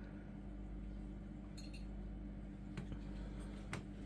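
Steady low hum of running aquarium equipment, with a faint bubbling haze, and two faint light clicks in the second half.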